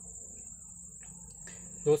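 A steady, high-pitched insect trill in the background over a faint low hum, with a man's voice saying one word near the end.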